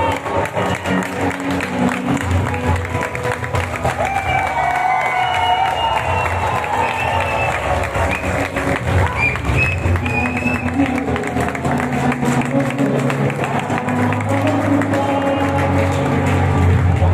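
Music playing across a football stadium, with crowd noise and clapping from the stands.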